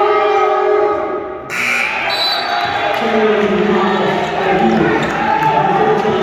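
Many voices chattering and calling out in a gymnasium, with a basketball bouncing on the hardwood court. The sound changes abruptly about a second and a half in.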